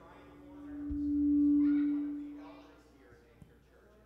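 A single steady low, pure tone swells up and fades away again over about two seconds, with faint voices underneath.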